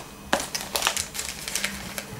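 Paper till receipt rustling and crackling as it is unfolded and handled, a run of irregular crinkly clicks.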